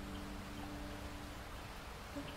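Steady hiss of rain, with the last ringing notes of an acoustic guitar fading away in a reverberant hall.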